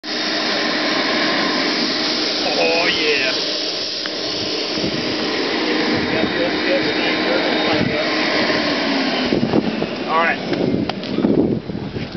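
Electric blower unit supplying air to spray-gun hoses, running with a steady rush of air and a low hum, then shutting off about nine seconds in.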